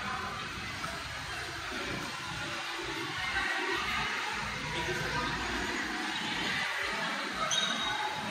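Indistinct background noise in a large indoor public space: a steady rushing hiss with an irregular low rumble and faint, far-off voices.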